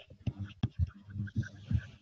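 A man's voice murmuring quietly and indistinctly in short broken bits, without clear words.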